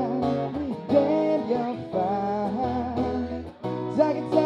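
A man singing to his own strummed acoustic guitar, with a short break in the sound near the end.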